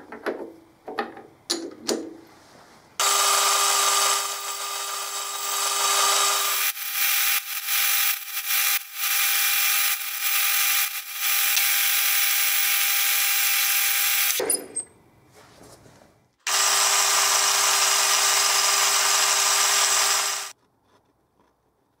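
Metal lathe making a pulley: a few knocks as the bar blank is set in the three-jaw chuck. Then the lathe runs and the tool cuts the metal, a steady whine under a loud hiss, in several stretches that start and stop abruptly.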